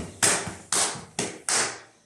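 A dancer's hands slapping his thighs and shins in a fast slapping sequence (csapás): a light smack at the start, then four sharp slaps about half a second apart.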